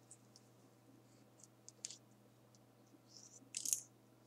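Faint scattered clicks, with one sharper click about two seconds in and a short scratchy rustle near the end.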